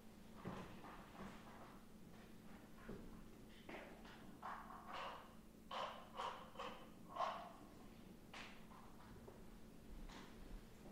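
Quiet room tone with a faint low steady hum, broken in the middle by a cluster of faint, short, soft noises.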